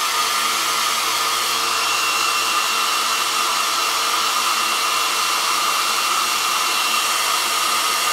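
Handheld hair dryer running steadily: a constant rush of air with a steady whine from its motor and fan.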